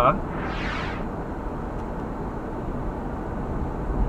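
Steady road and engine noise of a moving car heard from inside the cabin, with a brief breathy hiss about half a second in.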